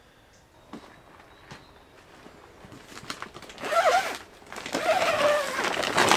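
Faint outdoor quiet, then, from about halfway through, rustling and crinkling of the polytunnel's plastic film as the door flap is pushed aside.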